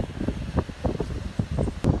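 Wind buffeting the phone's microphone in uneven, rumbling gusts, with one sharp click near the end.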